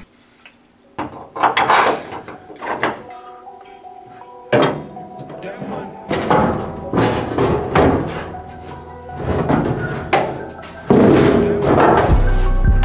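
Scattered knocks and clunks as a metal tank strap bracket and a fuel tank are handled and set down on a steel floor pan. Background music comes in under them and gets much louder near the end.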